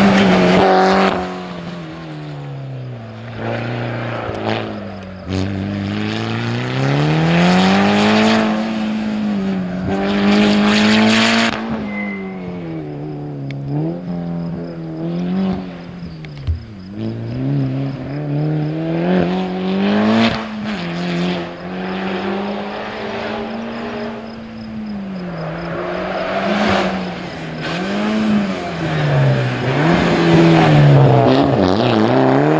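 Mitsubishi Lancer rally car's engine revving hard and dropping again and again as it accelerates out of and lifts into corners, the pitch climbing and falling many times. It grows louder whenever the car passes close.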